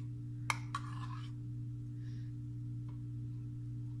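A metal spoon clinks twice against a cup while scooping milk foam, two short ringing taps about half a second in, over a steady low hum.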